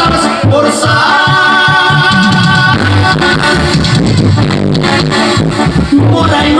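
Loud Mexican regional dance music with a Spanish-language song, played over a DJ's sound system, with a steady bass beat and long held notes.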